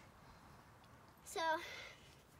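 One short spoken word, "so", a little past halfway through, over a faint, quiet outdoor background.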